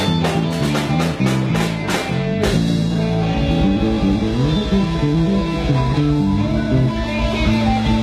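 Live rock band playing without vocals: electric guitars, bass and drum kit. The drum strokes drop away about two and a half seconds in, and the guitars play on with held notes.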